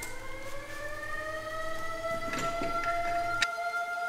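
A siren-like wail that rises slowly in pitch over about two seconds and then holds steady, with a few faint clicks partway through.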